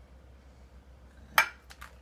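A metal spoon clinking against dishes while tomato sauce is spread over lasagna noodles: one sharp clink about one and a half seconds in, then two lighter ones.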